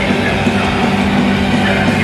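Extreme metal band playing live at full volume: distorted electric guitars holding a low riff over drums, picked up by a camcorder in the crowd.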